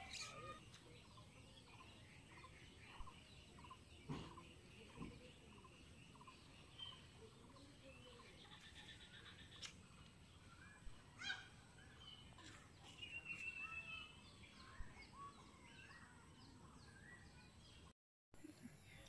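Faint bird calls: many short repeated chirps, with a longer trilling call a little past halfway, and a couple of light clicks.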